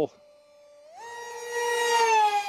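Brushless electric motor and 6x3 propeller of an RC foam park jet whining at high pitch. About a second in the pitch jumps up, and the whine then grows steadily louder as the plane closes in.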